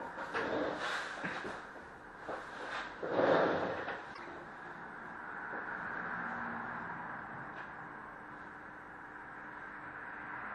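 Faint scattered clicks and rustles, with a louder rustle about three seconds in, then steady quiet room noise.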